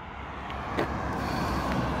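A car approaching on an asphalt road, its tyre and engine noise growing steadily louder as it nears.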